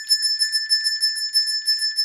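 A small handheld metal bell shaken rapidly. Its clapper strikes many times a second over a steady, high, bright ring. It is being rung for a test of a patient's ability to locate sound.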